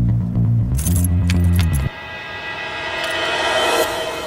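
Metallic clinking and rattling of a padlock being handled on a steel container, over a loud, low, droning film-score bass. The drone cuts off about two seconds in, and a sustained musical tone then swells up toward the end.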